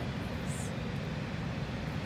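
Steady low rumble of background noise, with a brief faint high-pitched blip about half a second in.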